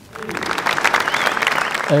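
Audience applause: many hands clapping, swelling in over the first half second and then holding steady until speech takes over near the end.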